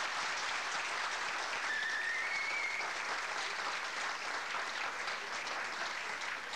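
An audience applauding steadily, with a brief high whistle rising slightly about two seconds in.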